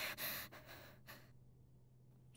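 A person's short, breathy exhale, loudest in the first half-second and trailing off by about a second in.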